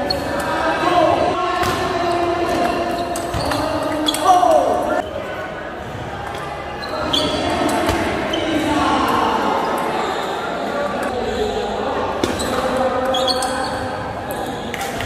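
Table tennis ball clicking off the paddles and the table at irregular intervals during play, over indistinct chatter from onlookers.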